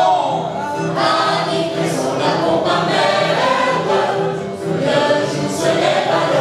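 Mixed group of men and women singing together in chorus, accompanied by an electronic keyboard, with a low accompaniment note pattern repeating about twice a second.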